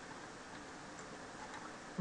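Quiet room background: a steady low hiss with a few faint ticks.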